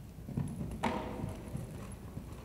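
A mare's hoofbeats in canter on soft sand arena footing: dull, repeated thuds, with one sharper noise just under a second in.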